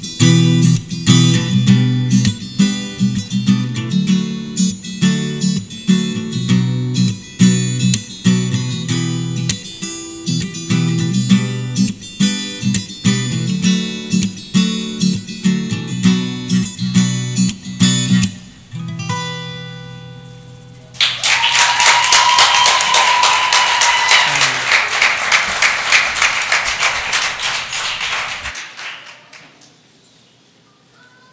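Instrumental acoustic guitar, a cutaway model played fingerstyle, with busy picked notes. The piece ends about eighteen seconds in on a final chord left to ring out. A few seconds of audience applause follow and then fade out.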